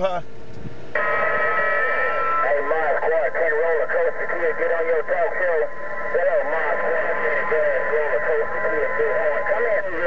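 Another operator's voice coming in over a President HR2510 radio's speaker, warbling and garbled, with steady whistling tones under it. It starts about a second in, after a moment of hiss.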